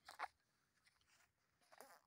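Near silence broken by two brief rustles, one just after the start and one near the end: handling noise as a fish is held against clothing.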